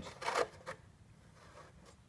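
A brief rustling scrape as a wooden-rimmed steering wheel is handled on a plywood board, with a fainter one just after, then quiet.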